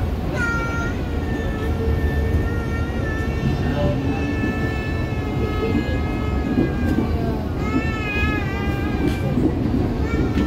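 KRL commuter electric train running, a steady rumble from the wheels and carriage, with high-pitched wavering squeal tones about half a second in, again for a couple of seconds soon after, and near the end.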